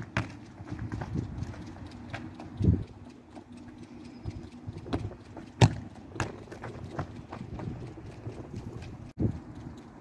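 A Gaelic football being kicked against a concrete wall and bouncing once on tarmac: sharp thuds at irregular intervals of one to a few seconds, the loudest about halfway through.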